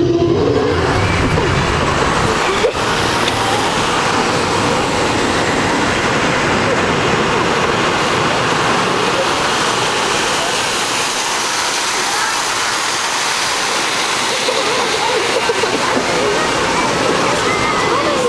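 Steady rushing, water-like noise on board the Timber Tower tumble-tower ride as it swings riders out over the water, with one sharp knock about three seconds in.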